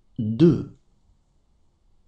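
Speech only: a voice says one short word, the end of the number "neuf cent deux", then the sound falls to near silence.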